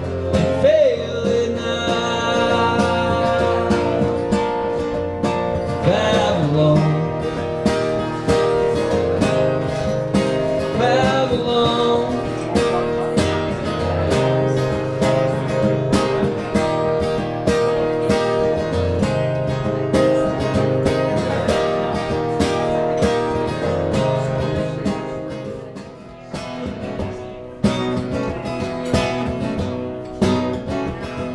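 Acoustic guitar strummed steadily by a solo performer, with a male voice singing a few lines in the first part. Near the end the strumming falls away briefly, then a new strummed pattern starts as the next song of the medley begins.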